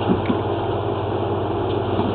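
A steady, low engine-like machine hum, with a few faint clicks just after the start.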